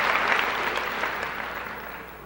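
An audience applauding and clapping, dying down steadily through the two seconds.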